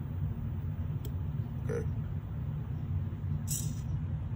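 SG90 micro servo giving a short, high buzz near the end as it turns to its set angle after a long press of the button, over a steady low hum, with a click about a second in.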